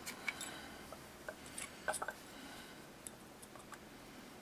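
Faint, scattered small clicks and ticks of the small parts of a Tokyo Marui M&P airsoft pistol's frame being handled, while a punch is lined up to knock out a pin.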